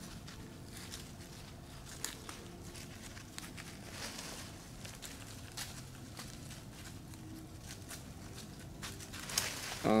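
Quiet snowy woods: a faint steady hiss with scattered small crunches and rustles in leaf litter and snow.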